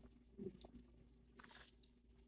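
Faint crunching of freeze-dried Nerds Clusters candy being bitten and chewed, with one short, crisp crunch about one and a half seconds in.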